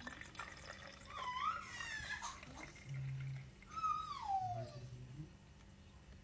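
Breast milk being poured from a breast pump's collection cup into a plastic baby bottle, a soft trickling pour. Over it come a few high, wavering whine-like sounds, the clearest one falling in pitch about four seconds in.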